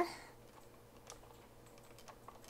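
A few faint, light clicks and taps of kitchen utensils against a glass mixing bowl of cheesecake batter.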